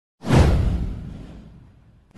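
A whoosh sound effect for an animated news intro: a sudden swoosh a fraction of a second in that sweeps down in pitch into a deep boom, fading away over about a second and a half.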